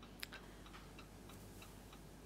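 Near silence with faint, even ticking, about three ticks a second.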